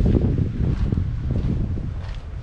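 Wind buffeting the microphone: a loud, gusting low rumble.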